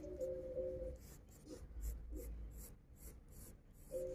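A graphite pencil scratching on drawing paper in short, repeated strokes as a curved outline is sketched. A couple of steady held tones of background music sound in the first second.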